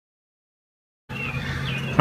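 Complete silence for about the first second, then outdoor background comes in with a steady low hum and a couple of short bird chirps.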